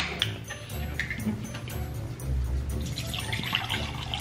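A plastic BuzzBallz ball cocktail container snapped open, then the premixed cocktail poured from it into a drinking glass near the end.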